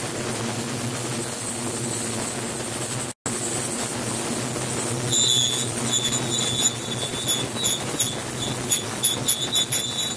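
Flowing river water together with the steady rumble of a passing electric train. About five seconds in, a high-pitched squeal joins and comes and goes in short pulses toward the end.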